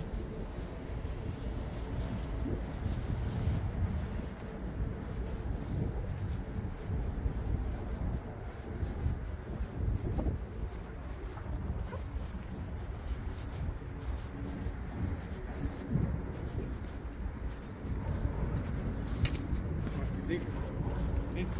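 Outdoor city background noise while walking: a steady low rumble with no distinct events.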